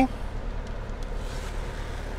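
Steady low rumble and hiss inside a car cabin, with no distinct events.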